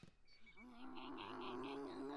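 Faint anime soundtrack: a character's drawn-out, wavering strained growl of effort, like a cartoon boy straining to lift something heavy, starting about half a second in. A faint high sound pulses about four times a second behind it.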